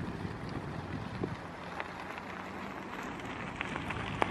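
Wind on the microphone: a steady rushing noise with low rumble, and a few faint short ticks in the second half.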